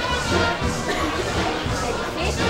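Brass band music playing, with deep bass notes under the horns.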